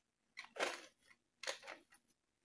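Three or four faint, brief rustles and scrapes of painting supplies being moved about on the table during a search for a brush.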